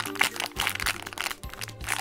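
A thin clear plastic bag crinkling and crackling in irregular bursts as a small bagged eraser figure is squeezed and turned in the hands, over steady background music.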